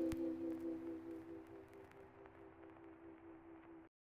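The final held chord of the outro music ringing out and fading away, then cutting off just before the end.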